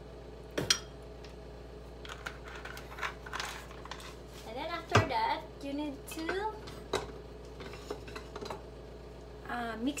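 Kitchen utensils and dishes knocking and clinking on a stovetop and counter: a few sharp knocks, the loudest about halfway through, as things are set down and picked up.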